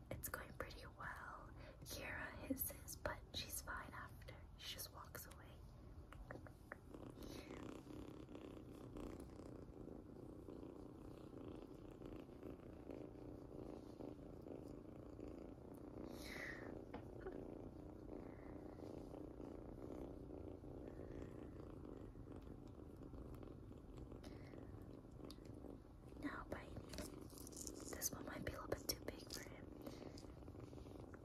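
A one-month-old kitten purring steadily, faint and close, clearest through the middle stretch.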